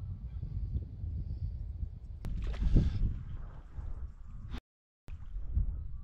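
Wind rumbling on the microphone while a hooked rainbow trout splashes at the surface on a fly line. The loudest splash comes just before three seconds in, and the sound drops out briefly near the end.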